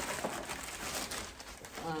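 Plastic shopping bag rustling and crinkling as items are pulled out of it.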